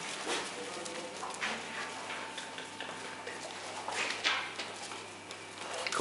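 Bear cubs scampering about on a tiled floor, their claws clicking and scuffling on the tiles in scattered bursts.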